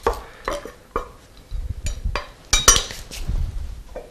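A chef's knife knocking on a wooden cutting board while rough-chopping garlic: a handful of sparse strikes, with the loudest, sharpest pair of clinks about two and a half seconds in.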